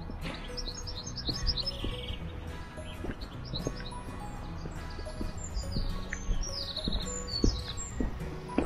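Small birds chirping and singing, with short repeated notes and quick trills, over soft background music.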